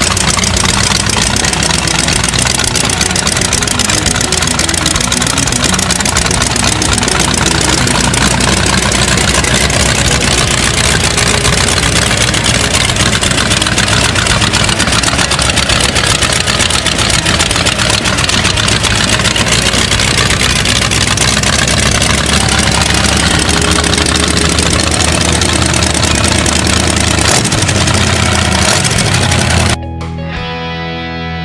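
Early-1960s Chevrolet 327 small-block V8, fed by three two-barrel carburettors, idling steadily and loudly.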